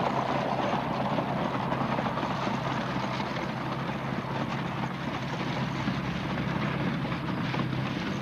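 Horse-drawn manure spreaders at work: a steady mechanical clatter and rumble from the ground-driven beaters and wheels, easing a little as the teams move away.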